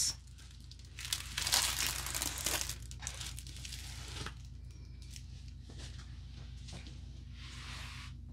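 Clear plastic protective film over a diamond painting canvas crinkling as a hand rubs and presses on it. The crinkling is loudest for the first couple of seconds, then thins to a few softer crackles.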